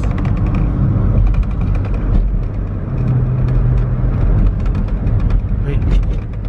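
Car cabin noise while driving: a steady low engine and road rumble, with a hum that swells for a second or so midway and a scatter of light ticks.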